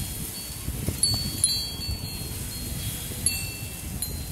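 Wind chimes ringing on and off: clear, high, lingering tones struck at different moments, over a low, uneven rumble.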